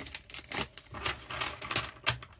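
Tarot deck being shuffled by hand: a quick, irregular run of papery card flicks and riffles.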